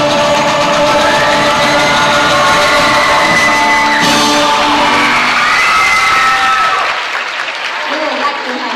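Live student rock band with violin, electric guitars, keyboard and drum kit playing, with a crash from the drums about halfway through. The music stops near the end and the audience begins to applaud and cheer.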